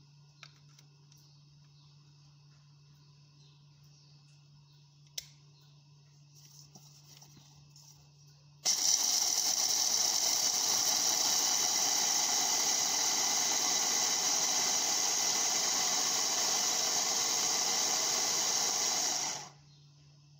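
Philips hand blender on its chopper bowl running steadily for about ten seconds, grinding pistachios into powder. It starts suddenly about nine seconds in and stops shortly before the end, after a quiet stretch with a few light clicks and one sharp click about five seconds in.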